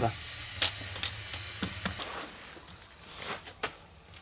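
A few sharp clicks and knocks as food and a bowl are handled on a perforated steamer rack over a wok, over a low steady hum that fades about two seconds in; two more short knocks come near the end.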